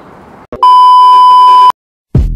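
Loud, steady electronic bleep tone, about a second long. It starts about half a second in and cuts off suddenly.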